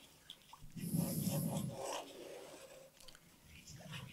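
Wooden spatula stirring a wet sugar mixture in a pan: a soft scraping and rubbing, loudest for about a second near the start, then fainter scrapes and light ticks.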